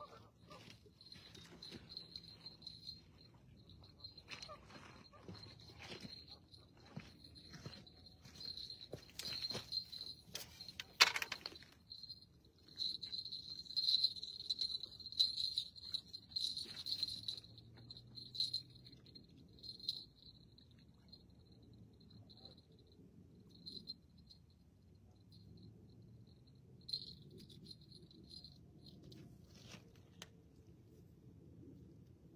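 Crickets chirping at night: a steady high pitched pulsing chorus that thins to patchy chirps in the second half. Scattered clicks and knocks sound through the first twelve seconds, the loudest about eleven seconds in.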